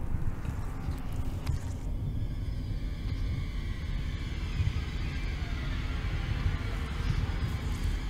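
Horror film soundtrack: a steady low rumbling drone, with faint high sustained tones coming in about two seconds in.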